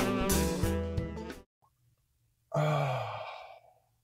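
Jazz music with saxophone fades out in the first second and a half. After a pause, a man lets out a sigh of about a second that falls in pitch.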